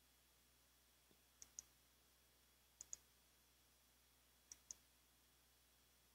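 Faint computer mouse clicks: three quick pairs of clicks, about one pair every second and a half, against near silence.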